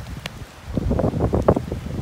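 Storm wind gusting through trees and buffeting the microphone, an uneven rumble and rush during a heavy rain shower.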